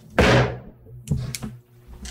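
A single sudden thump, followed a second later by a few faint clicks.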